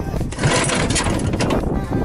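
Small gasoline engine of an outrigger fishing boat running steadily, close up, with a rushing hiss over it for about a second; the owner calls the engine in top condition.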